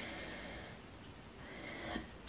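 Quiet room tone with no distinct sound, swelling faintly near the end.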